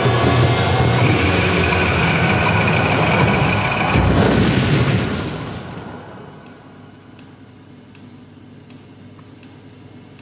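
A loud, dense sound-effects mix with a held high tone, ending in a rushing whoosh about four seconds in. It then drops to a quiet ambience with faint, spaced ticks.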